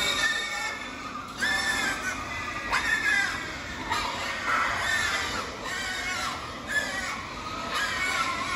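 Young pigs squealing again and again, a high squeal about every second, while they crowd around a feed hopper jostling for food.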